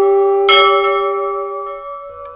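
A bell struck once about half a second in, ringing out over a long held horn-like tone; both fade away, the held tone stopping near the end.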